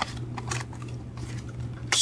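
Small cardboard phone box being handled and opened: a sharp click at the start, then scattered faint clicks and rustles of paperboard, over a steady low hum.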